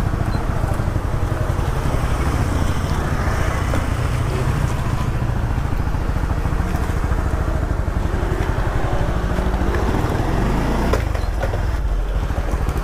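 Honda Winner X 150's single-cylinder engine running steadily as the motorcycle rides slowly along a rough lane, its note rising briefly near the end.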